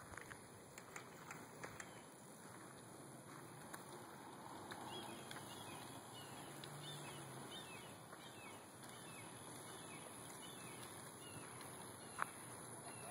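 Faint outdoor ambience with a steady high hiss, a few soft clicks in the first couple of seconds, and faint short chirps in the second half.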